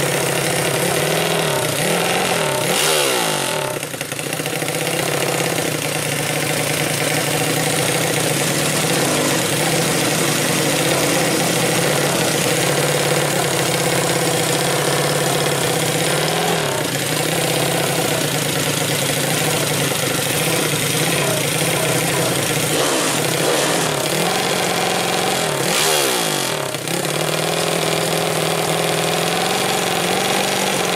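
Four-stroke 120cc drag-racing underbone motorcycle engine idling while staged to launch. It is revved in short blips that rise and fall in pitch, about three seconds in, around sixteen seconds and again near twenty-six seconds.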